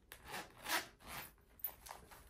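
Metal zipper of a small zip-around wallet being worked open by hand: a few short rasping pulls, then a couple of light clicks near the end.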